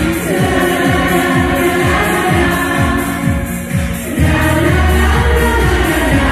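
A women's vocal group singing a German schlager over a backing track with a steady beat, about two beats a second. The beat dips briefly just before the four-second mark, then a held bass note comes in.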